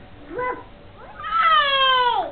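Baby crying out: a short cry, then a longer drawn-out wail that slides down in pitch.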